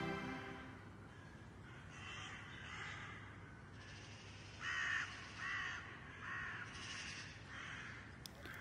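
A crow cawing again and again, about eight caws spread evenly over several seconds, the loudest about halfway through. Soft background music fades out at the very start.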